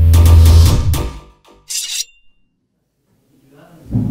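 Loud electronic intro jingle with a heavy bass and drum beat, cutting off about a second in. A brief high hiss-like swish follows, then silence.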